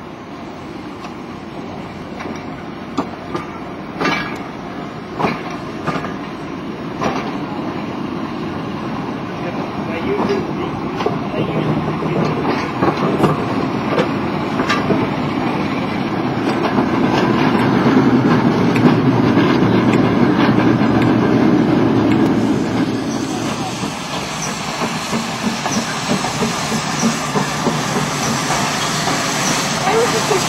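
Railway coaches, including Royal Mail travelling post office vans, rolling past on the track. Their wheels click over the rail joints in the first seconds, then a rumble builds to its loudest about two-thirds of the way through and eases off.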